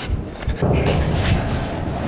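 Wind rumbling on the microphone over general outdoor street noise.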